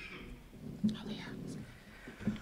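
Quiet whispered talk near the microphone, with a short thump just under a second in.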